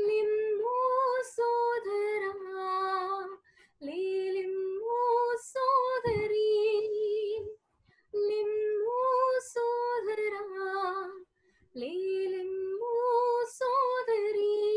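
A woman sings a Telugu Christian hymn (keerthana) alone, with no accompaniment. She holds long, steady notes in phrases of about four seconds and takes a short breath between them three times.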